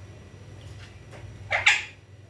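An Alexandrine parakeet gives one short, harsh squawk about a second and a half in, over a low steady room hum.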